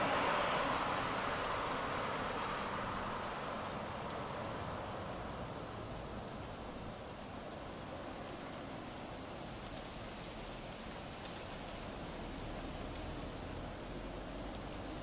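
A steady rushing noise with no tune or beat, fading down over the first several seconds and then holding level.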